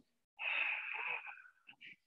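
A woman's audible breath through the mouth, lasting about a second, drawn with the effort of lifting both legs off the floor while lying on her back.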